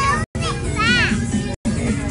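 A young boy's high-pitched voice over background music, cut off briefly twice.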